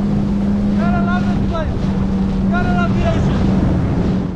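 Yamaha FXHO WaveRunner jet ski running steadily at speed, its engine a constant drone under a loud rush of wind and water. A few short high-pitched tones sound over it, about a second in and again near three seconds.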